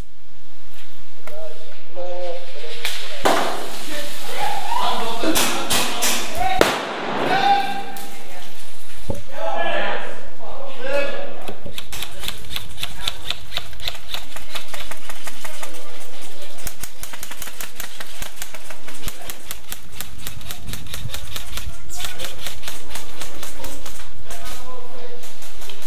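Airsoft guns firing: scattered sharp cracks under raised voices in the first half, then long, fast strings of regular clicking shots through the second half.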